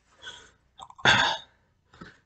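A man's short breathy vocal noise about a second in, preceded by a fainter one, heard between his words while he eats.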